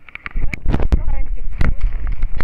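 Wind buffeting and movement rumble on the microphone of a camera carried by a running person: a loud low rumble that sets in about a third of a second in, broken by several knocks and thumps.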